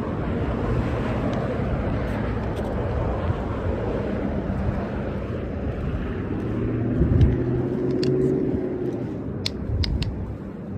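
Road traffic passing on a multi-lane road: a steady rush of tyres and engines, with one vehicle's engine hum growing loudest about seven seconds in. A few light clicks come near the end.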